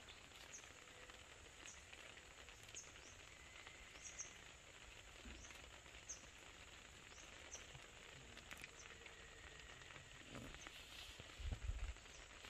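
Near silence: quiet outdoor ambience with faint high chirps repeating about once a second, and a brief low rumble near the end.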